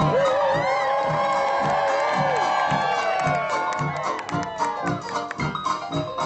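A live jazz orchestra plays dance music with a steady beat. Over it, during the first three seconds or so, the audience cheers and whoops, and the calls fall away by about the middle.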